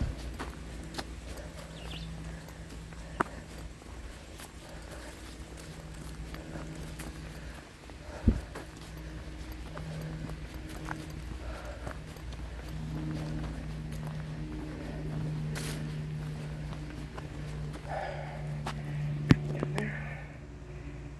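Footsteps on a dry dirt forest trail with a few sharp knocks, the loudest about eight seconds in and just before the end, over a steady low hum.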